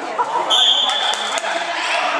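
A shrill, steady high tone held for about a second, starting about half a second in, over spectators talking in a reverberant sports hall. A few sharp knocks of the futsal ball being played come near the middle.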